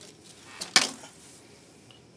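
A single sharp click or tap about three-quarters of a second in, with a fainter click just before it.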